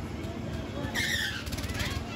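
Low, steady rumble of a fairground swing ride in motion, with riders' voices and a single high-pitched shout about a second in.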